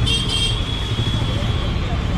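Steady low rumble of outdoor street noise at a roadside food stall, with a thin high-pitched tone near the start that fades over about a second and a half.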